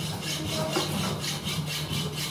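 Small electric gear motor of a model gantry crane running steadily, driving the roller chain that moves the trolley along the beam: a low hum with an even, quick clatter of chain links, about six or seven strokes a second.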